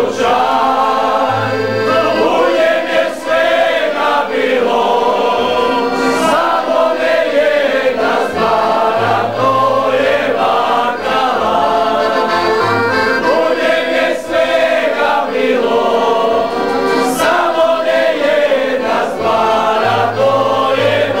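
A group of men singing a folk song together, accompanied by an accordion and a plucked upright bass playing a steady bass line.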